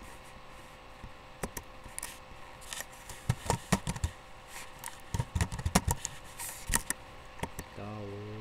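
A run of sharp, irregular clicks and knocks from something being handled, bunched in two clusters in the middle.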